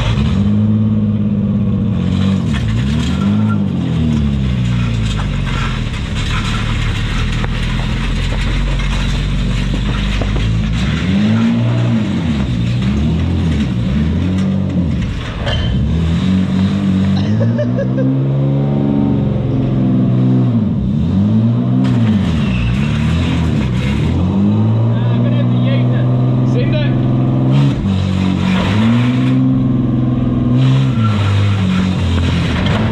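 Nissan R33 Skyline's engine revving up and down over and over, its pitch rising and falling every second or two as the slammed car is driven in short bursts. Rough scraping and grinding runs through it, from the lowered subframe dragging on concrete.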